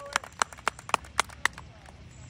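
A quick, irregular run of about a dozen sharp clicks or taps close to the microphone, stopping shortly before the end, over a faint low background hum.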